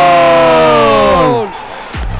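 A man's long drawn-out shout, one held call sliding down in pitch, cutting off about one and a half seconds in: a commentator's goal call as the equaliser goes in.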